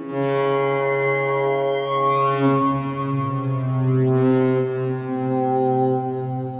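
Generative Eurorack modular synthesizer patch playing held, resonant notes over a steady low tone, stepping to a new pitch every couple of seconds. Bright sweeps run up through the harmonics about two and four seconds in. The counterpart voice is a Mutable Instruments Elements resonator excited by a Tiptop Z3000 oscillator's sweeping pulse wave.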